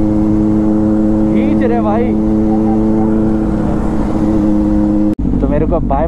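Motorcycle engine running at a steady cruising speed, a constant drone with wind rush on the onboard microphone. The sound breaks off abruptly about five seconds in, and a man's voice follows.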